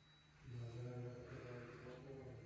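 A man's low voice, quiet and drawn out on held notes, starting about half a second in.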